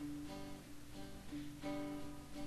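Acoustic guitar strumming a country rhythm, with a fresh chord about a second and a half in.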